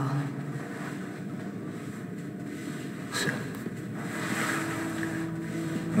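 A steady, low rushing background noise with a faint steady tone coming in during the second half.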